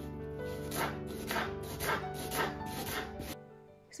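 Background music over a kitchen knife slicing an onion on a wooden cutting board, about two cuts a second. The music stops shortly before the end.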